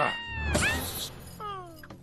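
A cartoon bird's shrill screech that falls in pitch, followed about half a second in by a rushing whoosh with a low thud and a few short falling squeals, over film music.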